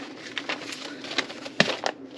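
Light rustling and a few scattered clicks of papers and small items being handled on a tabletop, with one sharper tap about one and a half seconds in.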